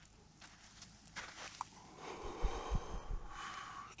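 A person breathing out a long breath of smoke: a soft hiss that builds about two seconds in, with a few low bumps against the microphone.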